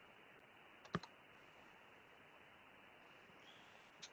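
Near silence with a single sharp click about a second in, a computer mouse or key click.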